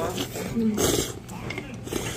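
Noodles slurped at the table: one short, hissing suck about a second in, with faint voices around it.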